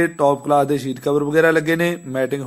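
A man's voice in long, held, chant-like tones, each lasting about half a second with short breaks between.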